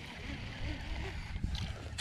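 Faint outdoor noise on an open boat: a steady low rumble of wind and water with a light hiss, and a few light clicks about a second and a half in.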